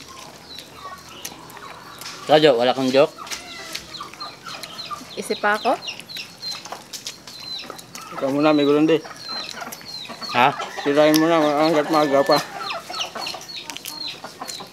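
Chickens clucking and calling: four drawn-out, wavering calls about two, five, eight and eleven seconds in, the last the longest, with short faint chirps between.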